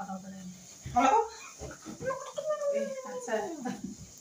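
A person's voice in short bursts, then a long whining call that slides down in pitch over about a second and a half near the end.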